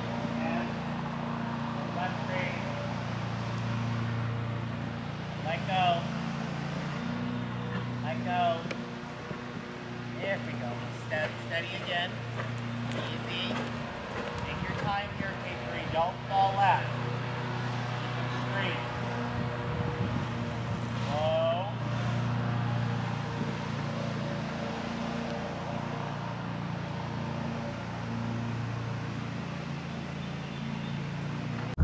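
A steady low mechanical hum, like an idling engine, runs throughout, with short distant voice calls breaking in now and then.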